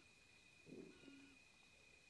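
Near silence: room tone with a faint steady high tone, and a brief faint animal call about two-thirds of a second in.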